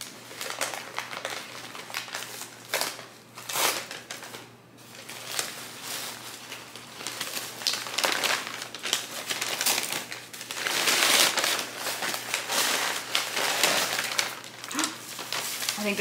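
Brown kraft paper wrapping crinkling and rustling in irregular bursts as a parcel is unwrapped by hand. It is loudest around eleven seconds in.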